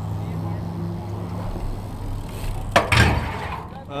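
BMX bike landing hard on concrete: a sharp clack about three-quarters of the way through, then a second knock and a brief rattle, over a steady low hum.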